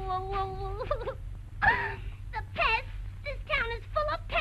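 Cartoon woman's voice crying: one long held wailing note that wavers slightly, then a loud sob about one and a half seconds in, breaking into short whimpers that fall in pitch.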